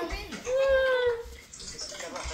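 A person's voice: one drawn-out vocal sound held for about half a second, falling slightly at the end, among quieter snatches of voices.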